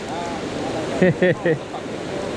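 Shallow mountain river rushing steadily over rocks and rapids. A short burst of voice comes about a second in.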